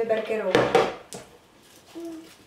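A voice talking for about the first second, with words the recogniser did not catch. A light knock a little after one second fits the white plastic basket being set down on the table.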